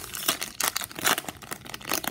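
Plastic wrapper of a trading-card pack being torn open and crinkled: a dense run of crackles.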